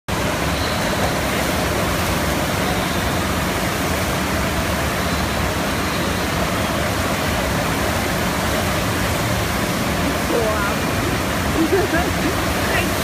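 Steady rush of water pumped as a sheet up an indoor surf-simulator wave. A few brief voices come in near the end.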